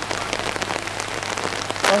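Steady rain falling: a dense patter of drops, with a faint low hum under it. A man's voice starts near the end.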